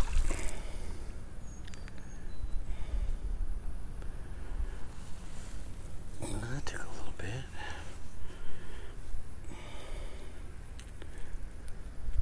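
A splash in the water dying away at the very start, then footsteps swishing through tall grass over a steady low rumble of wind on the microphone. A man gives a brief murmured hum about six to seven seconds in.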